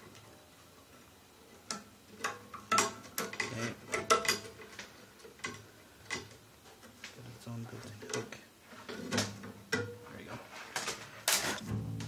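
Metal bass strings being handled at the tailpiece of an upright bass: irregular light clicks and metallic clinks as the wound string and its end are moved against the strings and hardware.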